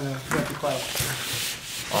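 Excess adhesive vinyl being peeled off its backing sheet while weeding a cut decal: a long rasping, hissing peel as the strip pulls away, loudest in the second half.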